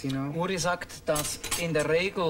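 Metal cutlery clinking lightly as it is handled, under a man talking.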